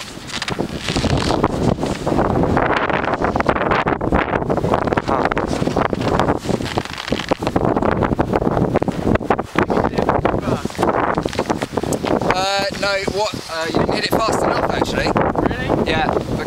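Wind buffeting the camera microphone, a loud, gusty rumble throughout. A person's voice cuts through briefly about twelve seconds in.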